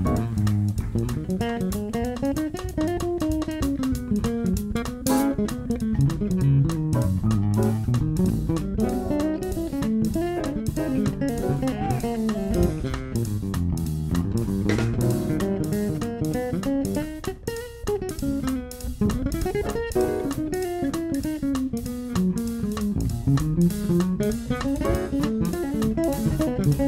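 Six-string electric bass playing a jazz solo line of quick runs that climb and fall, with a drum kit's cymbals keeping time behind it. The bass thins out briefly just past the middle, then picks up again.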